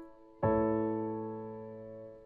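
Piano chord struck about half a second in and held, ringing and slowly fading. The tail of an earlier chord dies away just before it.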